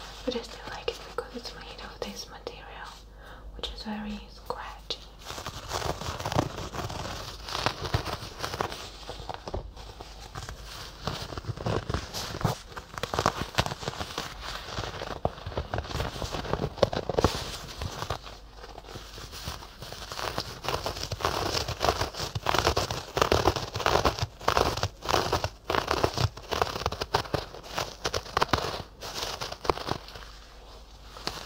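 Soft fluffy objects brushed and rubbed against the ears of a binaural microphone: dense, irregular scratchy rustling that grows fuller about five seconds in.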